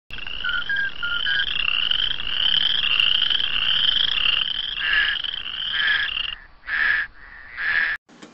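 Frogs croaking: a rising call repeated about every half second, then two separate shorter calls near the end.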